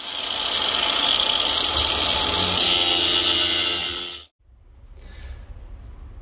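Angle grinder cutting through the steel arms of a BMW clutch disc hub. It makes a loud, steady grind that shifts in tone about two and a half seconds in, then cuts off abruptly after about four seconds.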